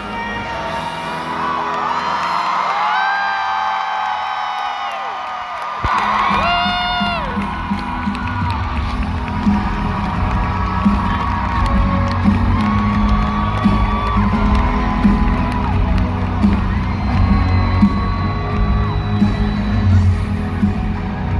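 Live arena band playing with the crowd cheering and whooping over it. The bass and drums drop back for a few seconds under held vocal notes, then come back in at full level about six seconds in, with a steady beat.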